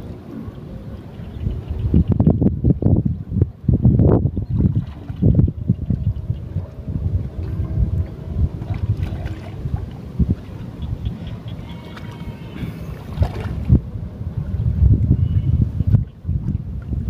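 Shallow paddy water sloshing and splashing as a cast net is hauled in through it and a man shifts his footing, with irregular low rumbling surges of wind on the microphone.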